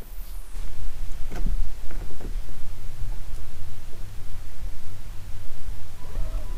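Wind buffeting the microphone: a low, gusty rumble that starts about half a second in and swells and fades, with a few faint ticks.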